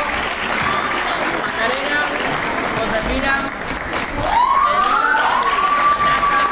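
Audience applauding, with voices calling out over the clapping; a long rising cheer stands out above the crowd about four seconds in.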